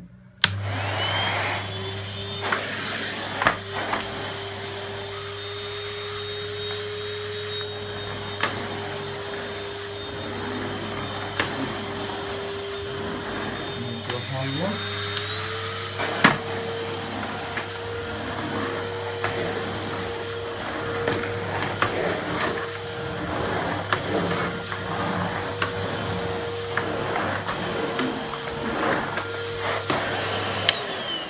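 Henry HVR200-12 cylinder vacuum cleaner switched on at its low setting and running steadily while picking up carpet-freshener powder, with scattered small ticks. About halfway through, its motor pitch steps up slightly, as on a switch to the higher power setting.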